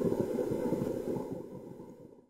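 Low rumbling whoosh sound effect of a channel intro sting, fading away near the end.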